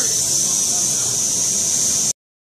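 Bostomatic 32GS high-speed CNC milling machine running, a steady high-pitched hiss.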